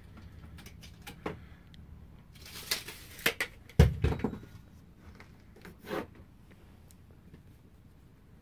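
Scattered light clicks and knocks of tools being handled at a wooden bench, busiest in the middle, with one heavier thump about four seconds in.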